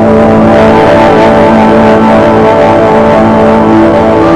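Instrumental opening of an alternative rock song, with no singing yet: guitars holding steady chords over a loud, dense band sound.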